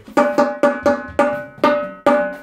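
Marching tenor drum with a freshly installed 12-inch head struck with a stick about six times at an uneven pace, each hit ringing on the same clear pitch. The head is being tapped around to check its tuning, and two of its lugs have already dropped lower after the head was stretched by playing.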